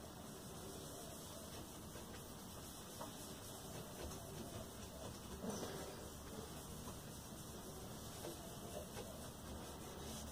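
Faint, soft rubbing of a cloth rag on wood as Tru Oil is wiped onto a roasted-maple guitar neck, over quiet room tone.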